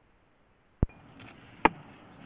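Dead silence, then two sharp clicks a little under a second apart, the first about a second in, with a faint hiss between them.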